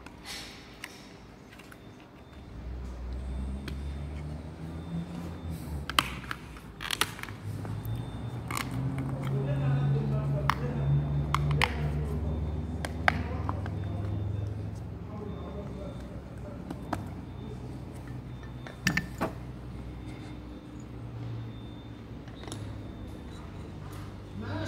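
Clutch booster parts being handled and fitted back together: scattered sharp metal clicks and knocks, a few close together, over a low hum that swells in the first half and fades.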